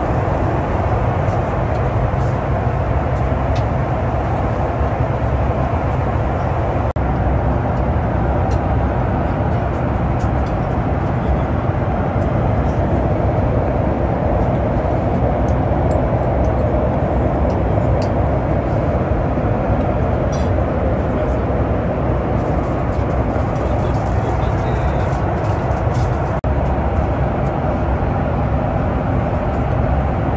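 Steady in-flight cabin noise of a Boeing 737-8 airliner: the even rush of airflow and the CFM LEAP-1B engines heard from inside the cabin, with a few faint small clicks.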